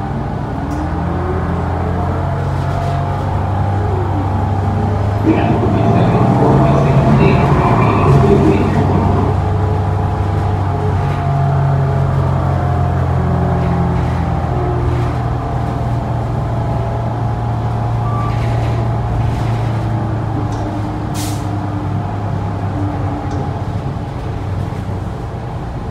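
Inside a New Flyer Xcelsior XD40 diesel city bus under way: the engine and drivetrain run with a steady low drone. The pitch rises in the first few seconds as the bus picks up speed, and it is loudest about six to nine seconds in.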